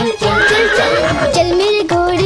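A cartoon horse whinny, a short wavering call about half a second in, over background music.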